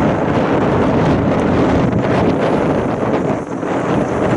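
Wind buffeting the camera microphone: a loud, steady, rumbling noise.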